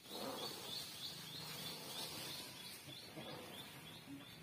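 A bird calling in a steady series of short, high chirps, about three a second, over faint outdoor background noise.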